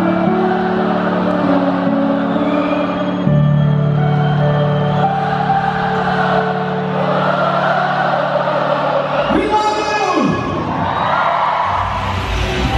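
Live dance-pop music in an arena: held synth chords under a large crowd singing along and cheering. About ten seconds in, a short sound swoops up in pitch and back down.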